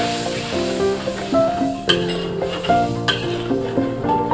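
Background music over food sizzling in a metal wok as it is stir-fried, with a metal spatula scraping against the pan in two sharp strokes about two and three seconds in.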